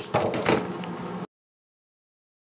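Two short knocks about a third of a second apart, over a low noisy background, then the sound cuts off abruptly about a second and a quarter in.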